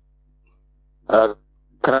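A second of near quiet with a faint low hum, then a short voiced sound from a man about a second in, and his speech beginning just before the end.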